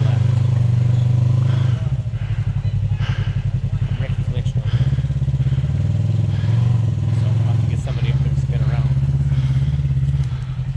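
Side-by-side UTV engine running, a steady low drone that eases off about two seconds in and picks up again near the middle.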